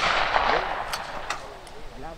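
Echo of a shotgun shot, fired just before, fading over the first half second, followed by three fainter sharp cracks about a third of a second apart, about a second in.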